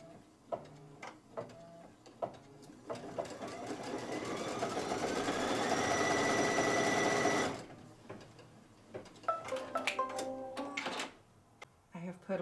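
Baby Lock Lumynaire embroidery machine stitching a placement line: after a few soft clicks it speeds up with a rising whine, runs fast for a few seconds and stops suddenly. A run of clicks and short mechanical whirs follows near the end.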